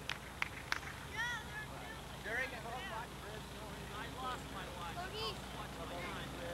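Faint, distant voices of children and onlookers calling out across a playing field in short scattered shouts, with a few sharp clicks in the first second and a steady low hum from the recording underneath.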